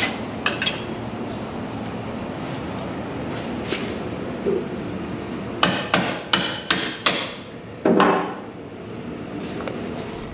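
Hammer blows on steel parts of a Jeep's front suspension: a couple of isolated strikes, then a quick run of five blows about three a second, then one heavier strike with a short ring.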